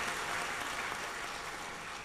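Audience applauding, the applause dying down.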